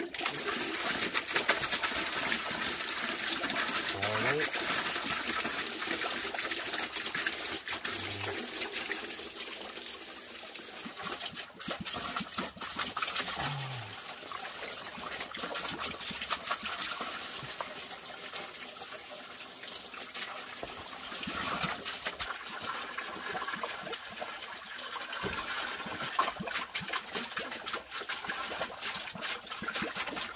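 Water trickling and splashing steadily, with a few short low sounds about 4, 8 and 13 seconds in.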